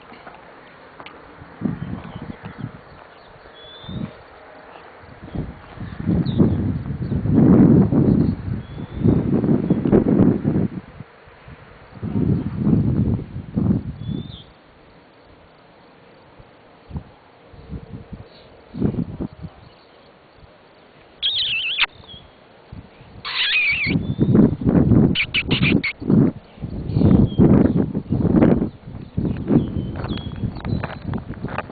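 Birds chirping in short, scattered calls, broken by several long bursts of low rumbling noise on the microphone, which are the loudest sounds.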